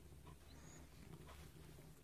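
Faint, steady low purring of a domestic cat while being brushed and stroked.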